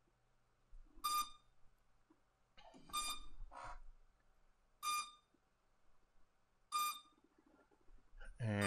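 Four short electronic beeps, evenly spaced about two seconds apart, from a SwellPro Splash Drone 4 that has just been powered on while plugged into a computer by USB for a firmware update.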